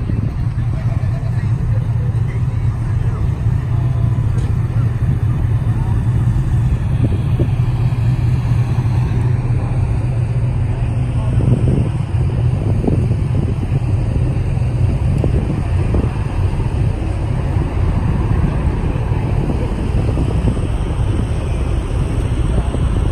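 A car engine idling with a steady low rumble, with people talking in the background.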